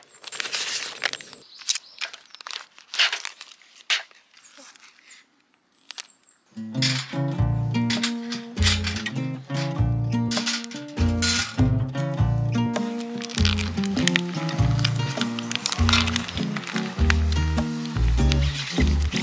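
A plastic meal-kit pouch crinkling as it is handled, torn open and emptied, in irregular bursts over the first several seconds. About six and a half seconds in, background music with a heavy bass beat starts and carries on.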